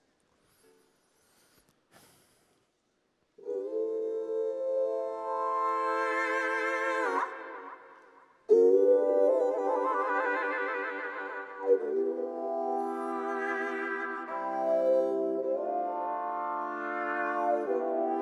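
A 3D-printed electric violin played through effects pedals. After about three seconds of near silence, long bowed notes with vibrato and several pitches sounding together begin, then fade away around seven seconds in. A loud new note starts the melody again about eight and a half seconds in.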